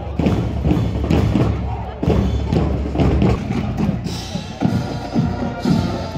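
Marching band playing outdoors, led by heavy bass drum beats at about two a second. About four seconds in the sound cuts to a different band, whose drumline and higher instruments take over.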